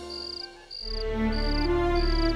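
A cricket chirping steadily, short high chirps evenly spaced about one every two-thirds of a second, over soft background music that dips away about half a second in and returns with a low held note.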